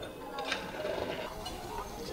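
Quiet background of faint distant voices, with a light click about half a second in.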